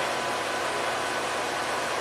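Steady background noise, an even rushing hiss with a faint steady hum in it.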